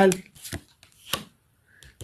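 Tarot cards being handled: a few short, sharp card clicks spread through a pause.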